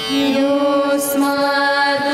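Girls' voices singing a devotional Hindu prayer together, holding long, steady notes.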